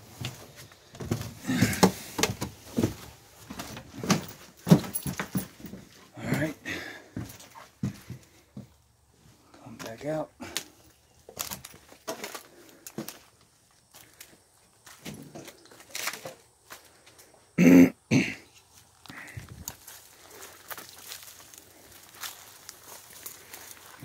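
Irregular knocks, creaks and scuffs of someone climbing down through a derelict wooden building and stepping over loose boards and debris, with one louder short sound about three-quarters of the way through.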